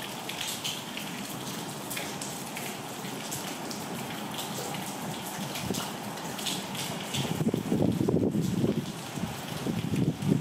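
Heavy rain falling steadily, with scattered drops ticking on nearby surfaces. From about seven and a half seconds in, a louder, uneven low rumble comes in over it.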